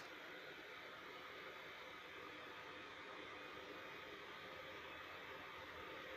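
Near silence: a faint steady hiss with a faint hum.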